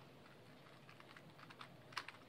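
Stickerless 3x3 speed cube being turned quickly by hand: faint, rapid plastic clicks of its layers, mostly in the second half, the loudest near the end.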